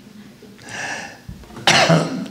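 A man coughing: a softer, breathy cough about half a second in, then a sharp, louder one near the end.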